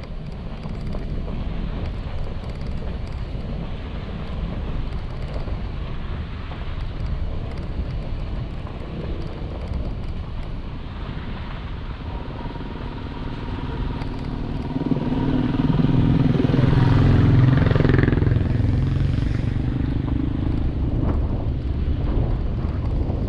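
A vehicle driving on a dirt road, its engine and wind on the microphone making a steady rumble. About two-thirds of the way in an engine grows louder for a few seconds, then eases off.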